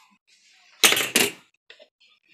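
Two short, loud clattering knocks about a third of a second apart, about a second in, as kitchenware (a strainer and a plastic measuring pitcher) is handled at the stove, followed by a faint tick.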